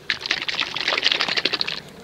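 Handling of a plastic bottle of machine polish: rapid rustling and clicking for under two seconds, fading out just before the end.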